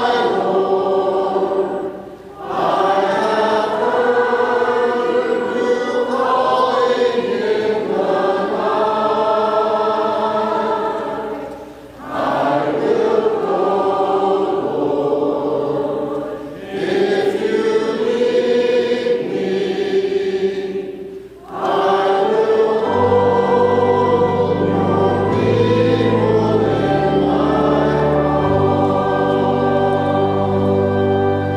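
Church choir singing a slow anthem in long phrases, with four short pauses for breath. About three-quarters of the way through, low sustained notes join beneath the voices.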